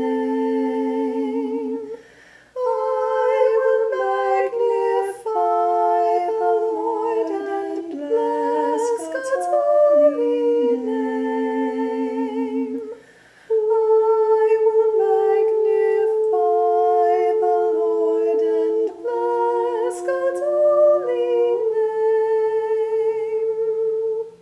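A woman's voice singing a meditative canon chant a cappella, several parts overlapping in harmony, with long held notes and vibrato. The singing breaks off briefly about two seconds in and again about thirteen seconds in.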